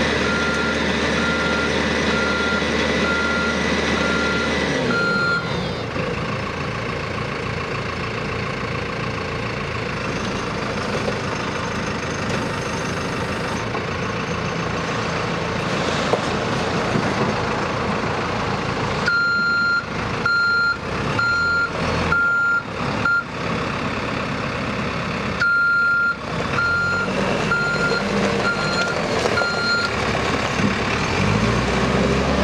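Reversing alarm of a JCB 2CX backhoe loader beeping in a steady on-off pattern over its running diesel engine. The beeping stops about five seconds in as the engine note drops, then starts again twice later on as the machine reverses.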